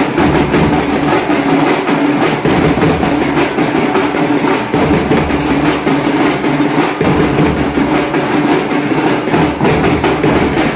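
An ensemble of large dappu frame drums beaten with sticks in a fast, driving, steady rhythm, loud throughout.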